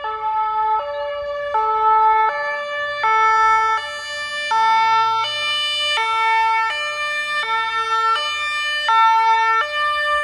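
German two-tone emergency siren (Martinshorn) on a fire-brigade crew transport van on an emergency run, alternating between a high and a low tone about every three-quarters of a second. The vehicle's engine can be heard under it from about three seconds in.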